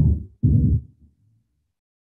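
Two loud, low, muffled thumps about half a second apart, heard over a video-call microphone, as when the mic is bumped or handled.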